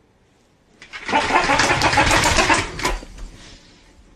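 A duck-shaped toy's small motor whirring with a rapid rattle, starting about a second in and running for about two and a half seconds before stopping.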